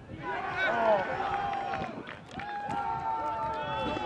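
Several people shouting and cheering, with no clear words, ending in one long drawn-out yell held for over a second.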